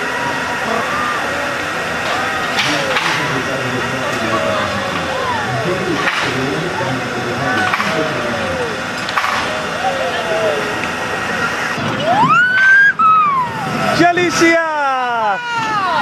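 Children's voices calling and squealing on a small children's roller coaster, over the steady rumble of the train on its track; near the end come loud, high rising-and-falling shrieks.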